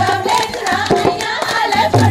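Women singing a Punjabi boliyan for giddha, with the group clapping along in rhythm and a drum keeping the beat; the low drum beat comes back strongly near the end.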